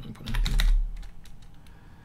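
Computer keyboard being typed on: a quick cluster of keystroke clicks in the first second, entering a dimension value, with a heavy low thud among them, then a few lighter clicks.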